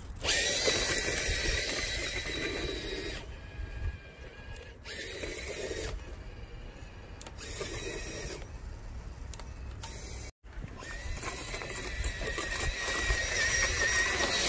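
Radio-controlled truck's electric motor and drivetrain whining, swelling and easing as the truck speeds up and slows while plowing snow. The sound cuts out briefly about ten seconds in, then returns louder.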